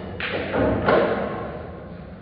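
Pool balls knocking together and thudding on a nearby table: a sharp knock, then a louder clatter of hits that is loudest about a second in and dies away.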